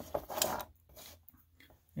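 Handling noise: a short rustling scrape in the first half second, then a few faint small ticks, as a wristwatch on a fabric NATO strap and a digital caliper are moved about on a table.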